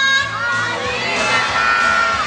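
A crowd of young children shouting a drawn-out greeting together in answer to the MC's call, over background music.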